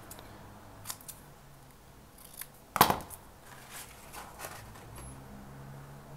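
Scissors cutting a small strip of paper down to size, with one sharp snip just before three seconds in and a few fainter clicks of paper handling around it.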